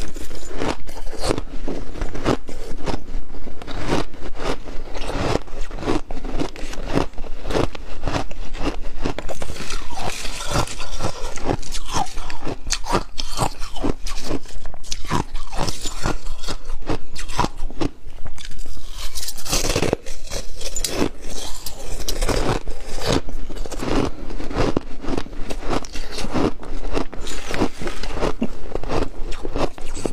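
Close-miked crunching and chewing of mouthfuls of crushed slushy ice, packed with rapid crackling crunches, with a metal spoon scraping ice out of a plastic tub.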